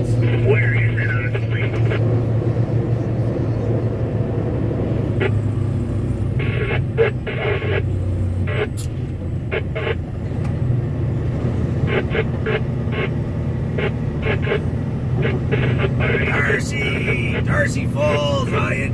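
Pickup truck driving on a rough asphalt road, heard from inside the cab: a steady low engine and road drone throughout, with a few short clicks.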